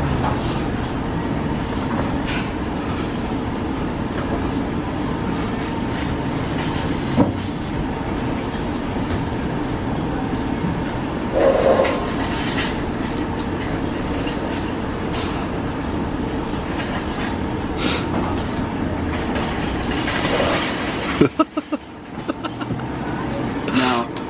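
Steady rumble of passing vehicles, with a few sharp knocks. The rumble drops away suddenly near the end amid a quick cluster of knocks.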